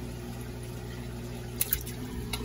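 Water moving in a holding tub over a steady low hum, then two quick splashes about one and a half seconds in as an Assasi triggerfish is let go into the water.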